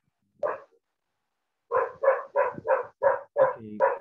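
A dog barking over a video call: one bark about half a second in, then a quick run of about eight barks, roughly three a second.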